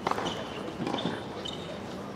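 A tennis ball hitting the hard court or a racket with one sharp pop at the start, followed by faint voices and two brief high squeaks.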